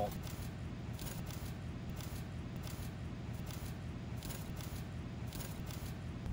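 Steel-tined mulch fork scraping and dragging through shredded-bark mulch, pulling it back off a bed edge in a series of faint, scratchy strokes.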